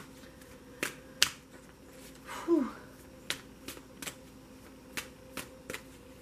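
A deck of cards being shuffled by hand: irregular sharp snaps and clicks as the cards hit one another. A short falling tone, the loudest sound, comes about two and a half seconds in.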